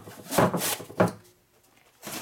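Small cardboard box slit open with a knife and handled, with scraping and rustling, then a sharp knock about a second in.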